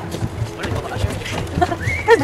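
Footsteps of several people walking on a wooden boardwalk, with voices talking near the end.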